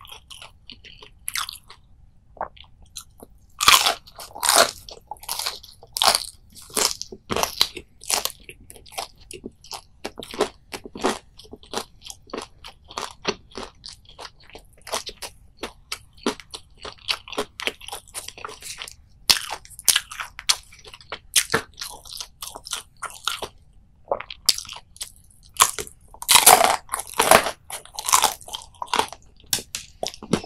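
Close-up crunching bites and chewing of battered, deep-fried whole anchovies, bones and all, heard as runs of crisp crackles. It starts sparse, picks up about four seconds in, and is loudest near the end.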